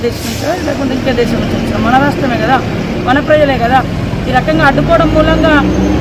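A woman speaking Telugu continuously at conversational pace, over a low steady rumble.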